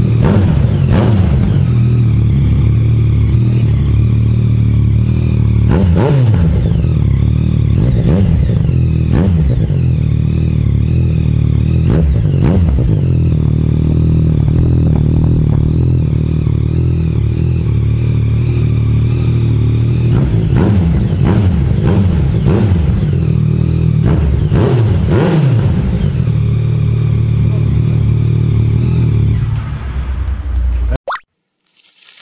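Yamaha MT-09's 847 cc inline-three engine running through an aftermarket Termignoni exhaust, idling steadily and blipped with the throttle every few seconds. Each blip rises and falls quickly back to idle, and the blips come closer together about two-thirds of the way through.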